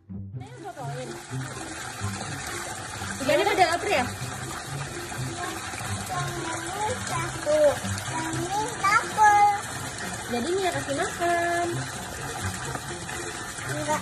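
Steady rush of running water in a koi pond, with a young child's voice calling out and squealing several times over it.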